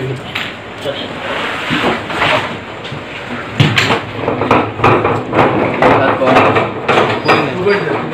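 Several men's voices talking over one another in a crowded vehicle, mixed with knocks and bumps of handling, the sharpest about three and a half seconds in.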